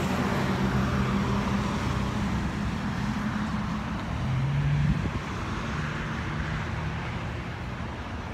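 Steady hum of motor vehicles, with a low engine note that swells about four seconds in and drops away about a second later.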